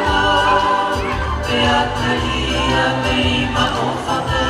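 Music for a group dance: several voices singing together in chorus over a steady bass accompaniment.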